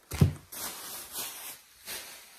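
A single thump as a packaged block of mozzarella is set down on a table, followed by soft plastic rustling of packaging and grocery bags.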